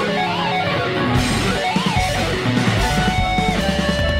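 A rock song playing, led by a guitar melody of held notes that slide and bend in pitch over a full band.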